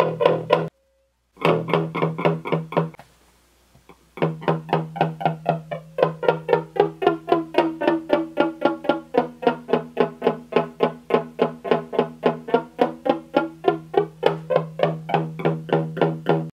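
Electric guitar picking one note over and over, about five times a second, through a Strich Twister analog flanger pedal in Freeze mode into a small Orange amp. The flanger sweep is held at one fixed position instead of moving. The playing breaks off briefly about a second in and again around three to four seconds in.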